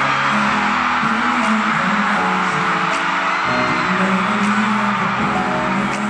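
Live K-pop song played loud through an arena sound system, a male vocal over held bass notes that change every second or so.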